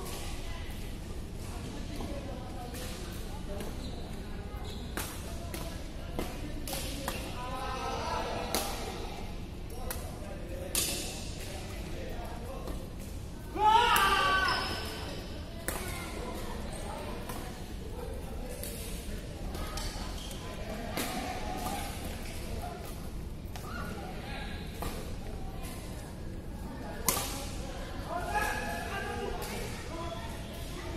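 Badminton rackets striking the shuttlecock in a doubles rally, sharp smacks every second or two in a large hall. Players call out now and then, with one loud shout about halfway through.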